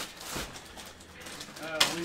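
Clear plastic bag crinkling as hands pull a bagged item from a cardboard box and start opening it, with one sharp crackle near the end.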